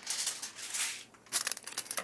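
Sheet of tin foil crinkling and rustling as it is cut with scissors and handled, with a short lull about a second in before more crackles.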